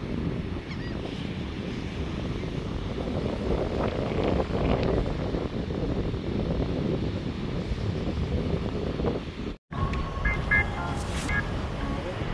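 Wind buffeting the microphone over surf breaking on the beach, a steady rumbling wash. The sound cuts out for a moment about two seconds before the end.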